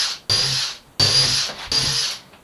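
Cordless drill-driver driving screws into a wooden frame in four short bursts of about half a second each, its motor whining steadily in each burst.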